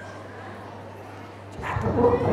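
Pause in amplified speech: a steady low hum through the microphone system, broken about a second and a half in by a sudden loud voice-like cry.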